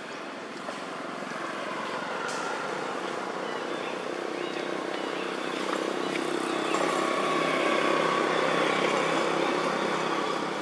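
A motor vehicle's engine running with a steady hum, growing gradually louder and loudest a little past the middle.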